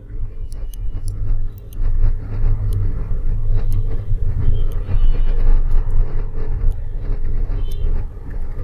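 A steady low rumble with faint, irregular clicks over it.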